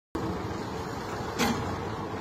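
Engine of a front loader running steadily, with one short, sharp noise about one and a half seconds in.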